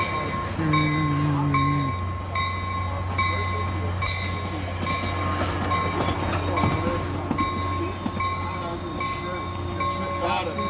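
ACE passenger train of bilevel coaches rolling slowly along the platform as it comes in to stop, over a steady low rumble, with a bell ringing repeatedly. High-pitched brake and wheel squeal sets in over the last couple of seconds as the train slows.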